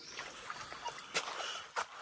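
Footsteps crunching on forest leaf litter, about four short steps roughly half a second apart, over a faint outdoor background.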